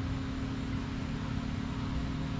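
Steady low mechanical hum with an even hiss over it, no change across the two seconds.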